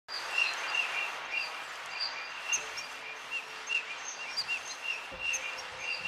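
Outdoor ambience: a steady background hiss with short, high bird chirps repeating several times a second. Faint held music notes come in near the end.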